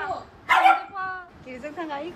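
A dog barking once, sharply, about half a second in, then giving short high yips and whines: play vocalising between two dogs.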